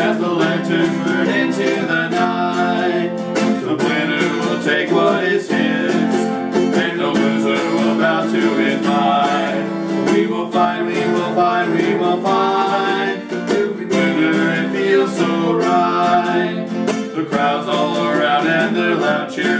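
An acoustic guitar and a ukulele strummed together in a steady rhythm, with two male voices singing over them.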